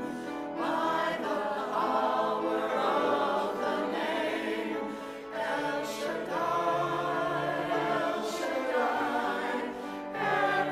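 Mixed choir of men's and women's voices singing together, in phrases with brief breaks between them near the start, about halfway through and near the end.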